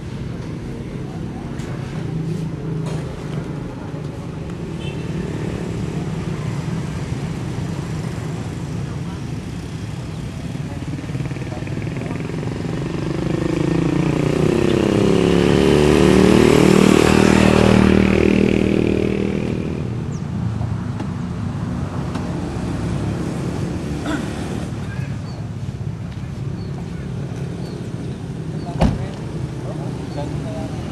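A motor vehicle passes close by, rising to a peak in the middle and fading away over several seconds, over a steady low outdoor rumble. There is one sharp knock near the end.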